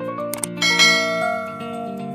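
Background music with a sharp click, then a bright bell chime that rings out and fades: the sound effect of a subscribe-and-notification-bell animation.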